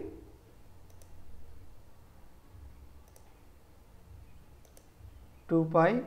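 A few faint computer mouse clicks, spaced a second or more apart, as a symbol is inserted into a Word document.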